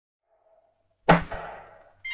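A sudden loud hit about a second in, followed a moment later by a smaller second hit. Both ring away over most of a second.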